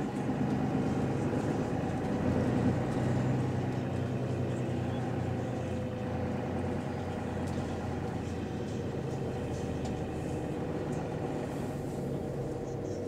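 Bus engine and drivetrain running steadily, heard from inside the passenger saloon, swelling slightly about two to three seconds in.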